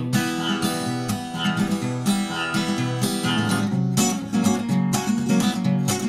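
Acoustic guitar strummed in a steady rhythm, chords changing about every second, with no singing: an instrumental break between verses.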